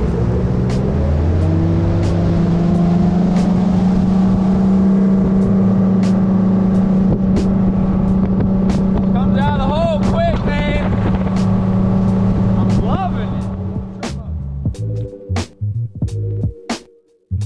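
The bass boat's outboard motor runs under way during its break-in hour. Its pitch rises over the first couple of seconds, then holds steady, and it fades near the end as music comes in.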